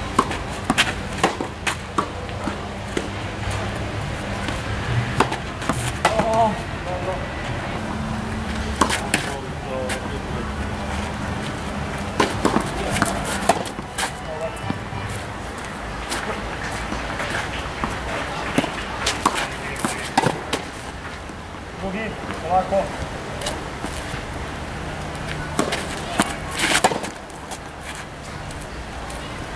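Tennis balls being struck with rackets on a clay court, sharp single hits at irregular gaps of about one to several seconds, over a steady low hum.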